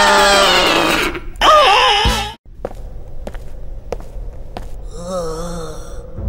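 Cartoon characters' wordless voices wailing and exclaiming with swooping pitch for about two seconds, then cutting off suddenly. A quieter stretch follows with a few sharp clicks and a brief wavering tone near the end.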